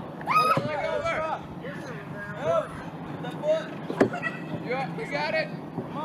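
Several people shouting and calling out in short, high-pitched calls, with one sharp knock about four seconds in.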